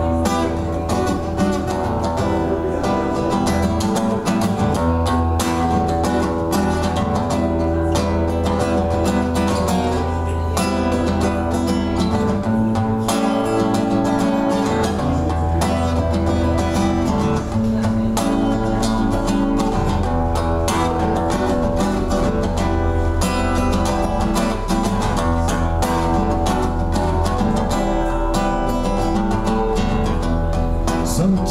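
Solo acoustic guitar playing continuously.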